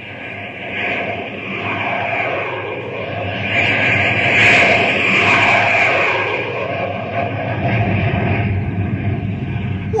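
Radio-drama sound effect of a jet flyby: a rushing engine noise builds, is loudest about four to five seconds in with a pitch that falls as it passes, then settles into a low rumble.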